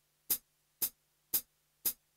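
Count-in click track at tempo 116: four short, sharp, evenly spaced clicks about half a second apart, marking the beat before a bass-and-drums backing track.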